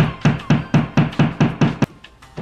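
A hammer tapping a nail into a drywall wall, a quick even run of about four blows a second that stops just before the end.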